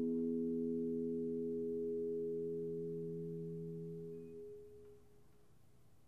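Pipe organ holding a soft chord of steady, pure tones, released about four and a half seconds in and dying away within half a second, leaving faint room tone.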